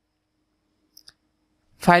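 Two quick, faint computer mouse clicks about a second in, against near silence; a man starts speaking near the end.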